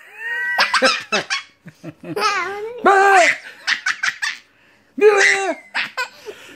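A young child laughing in several high-pitched bursts.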